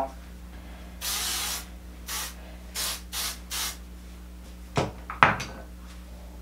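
Healium Fiber Flex styling spray sprayed onto hair in hissing bursts: one long spray about a second in, then four short quick sprays. Near the end come two brief sharp sounds.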